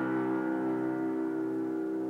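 A held piano chord of many notes slowly dying away, with no new notes struck.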